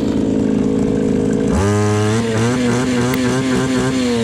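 Small two-stroke brushcutter engine running steadily at idle, freshly refuelled with a 25:1 petrol–oil mix. About a second and a half in, its note changes abruptly to a higher, wavering running speed.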